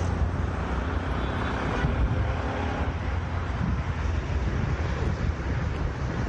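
Outdoor street noise: a steady rumble of passing road traffic, with wind buffeting the phone's microphone.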